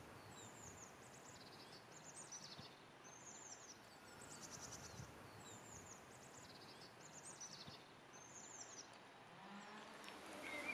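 A songbird singing faintly: short, high, thin phrases that follow each other about once a second over a quiet outdoor background.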